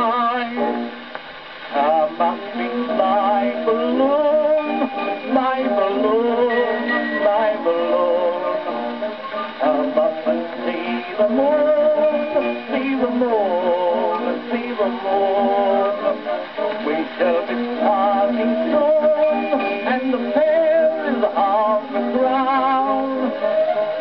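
An early gramophone record of an Edwardian music hall song playing on a gramophone, with music continuing throughout and wavering, vibrato-like melody lines.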